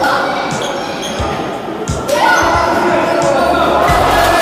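A basketball bouncing on a gym floor in a large, echoing sports hall, a few separate thuds, with players' voices calling out.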